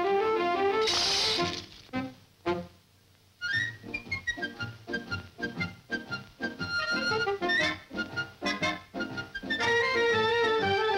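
Orchestral cartoon underscore. It opens with a climbing run of notes, has a short hiss-like burst about a second in and a brief pause near three seconds, then plays quick, short staccato notes.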